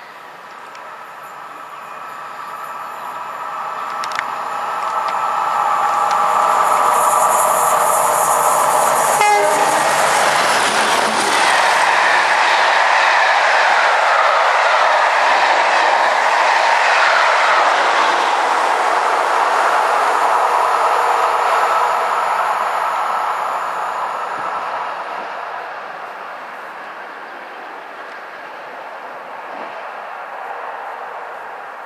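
Pair of Class 37 diesel locomotives under power hauling a charter train through at speed. Their engine note grows louder over the first several seconds, then the coaches clatter past over the rail joints, and the sound fades as the train draws away with the Class 57 on the rear.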